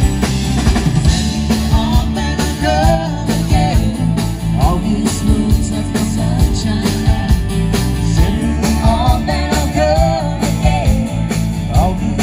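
A rock band playing live through a PA, with guitars, bass and a drum kit keeping a steady beat. Women sing the melody over it.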